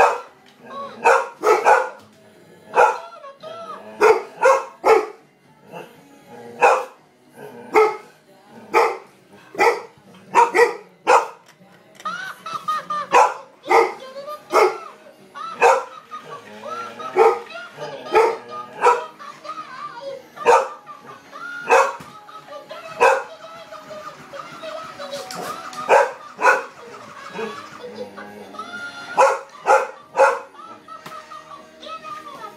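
Golden retriever barking repeatedly, sharp single barks about once a second, at an Elmo toy whose high-pitched voice and music play underneath.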